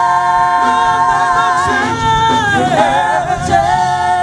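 A gospel vocal group singing in harmony without instruments, holding long sustained notes; the chord shifts about two seconds in and wavers briefly near three seconds before settling on a new held note.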